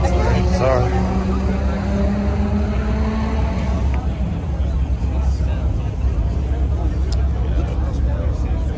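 A car engine running steadily, its hum rising slightly in pitch over the first few seconds and then easing off, under the chatter of a crowd.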